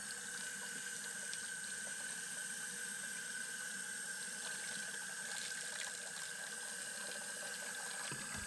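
Tap water running steadily into a pot of water in a sink, refilling the hot-water bath that warms a ferric nitrate etching solution.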